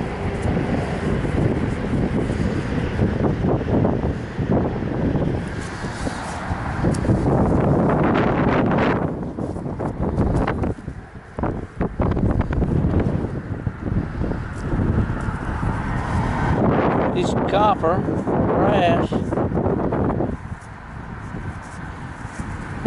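Gloved hand digging and scraping loose soil in a small hole, with wind rumbling on the microphone.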